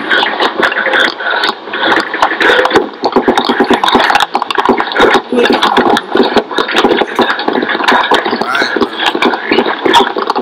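Distorted voices chanting in a heavily degraded recording full of crackling clicks: the played Japanese commercial's voice warped and changing.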